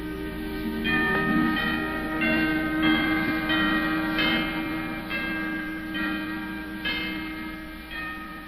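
Orchestral soundtrack music with bells struck in a slow melody, about one stroke every three-quarters of a second, ringing over held lower notes and growing quieter near the end.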